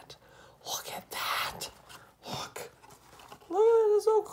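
A man muttering and whispering under his breath in a small room, then a loud, drawn-out voiced exclamation near the end.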